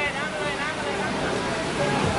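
Indistinct voices of people talking at the pitch, over a steady background hum of outdoor noise.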